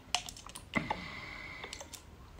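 Light clicks of a glass dropper and its plastic cap being handled at the neck of a small serum bottle, then a faint steady high tone lasting about a second.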